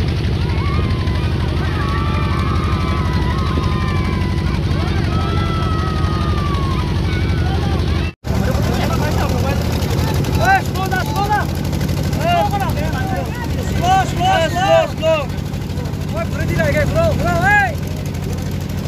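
Motorboat engine running with a steady low hum, with people's voices calling out over it, more often in the second half. The sound cuts out for an instant about eight seconds in.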